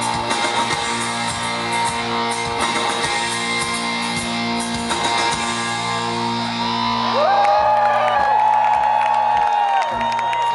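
Live rock band playing electric guitars with drums, recorded from the crowd. From about seven seconds in, a long held high note bends up and rings over thinning accompaniment.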